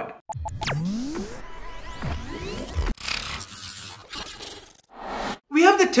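Short electronic intro sting with whooshing pitch sweeps, one rising and several falling, and metallic clinks, switching abruptly to a noisier swish about halfway through.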